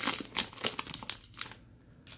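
Plastic trading-card pack wrapper crinkling as it is handled and pulled away from the cards. The crackling is densest in the first second and then dies away.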